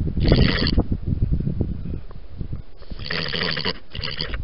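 European badger making two short, rough calls close to the microphone, about two and a half seconds apart.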